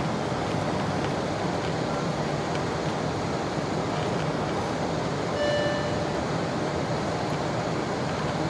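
Steady cabin noise of a Boeing 747-8I on final approach with flaps extended: airflow and engine noise heard from a window seat behind the wing. A short tone sounds about five and a half seconds in.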